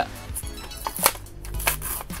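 Cardboard backing card of a Hot Wheels blister pack being ripped open by hand: a few sharp tearing crackles, the loudest about a second in and again near the end, over quiet background music.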